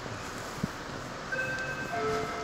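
Inside a Metra commuter train car: a steady noise with a single knock early on, then from about halfway several steady high-pitched tones join in.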